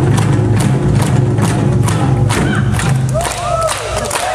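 Korean barrel drums (buk) beaten by an ensemble in fast, dense strokes with a deep sustained ring, breaking off about three seconds in. Shouted calls follow as the drumming stops.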